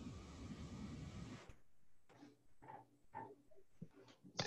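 Near silence: a faint steady hiss that cuts off about a second and a half in, then a few faint, indistinct short sounds.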